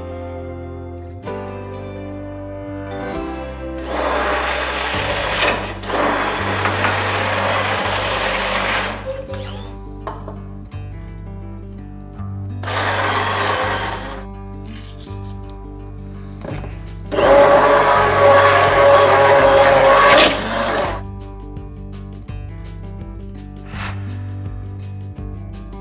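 An electric blender motor runs in three bursts, the last one the longest and loudest, most likely blending the corn chowder. Background music plays throughout.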